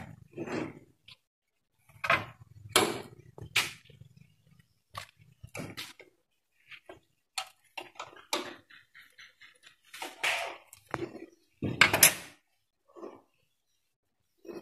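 Irregular clicks and clacks of an embroidery machine head's needle-bar mechanism being worked by hand, with a few short voice-like sounds; the loudest comes about twelve seconds in.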